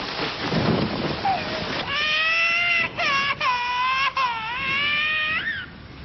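Steady rain falling, then about two seconds in an infant starts crying loudly in long, wavering cries broken by short catches of breath.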